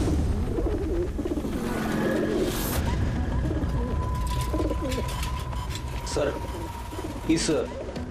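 A flock of feral pigeons cooing throughout, with bursts of wing-flapping as birds take off, the sharpest burst near the end.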